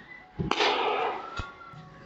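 A balloon bursts with a single sharp pop about half a second in. It was burst by a focused green laser beam heating a black marker dot on its skin. A short fading rustle follows, with a small click about a second later.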